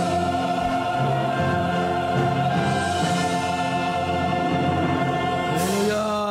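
Large choir with orchestra holding a long sustained closing chord of a church anthem. A final chord slides up and comes in near the end and is held.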